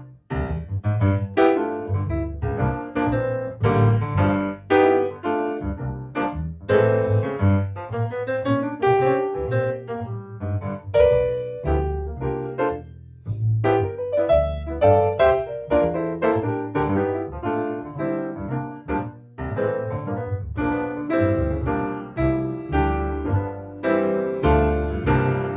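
Jazz duo of grand piano and plucked upright bass playing a tune: piano chords and melody over a low bass line.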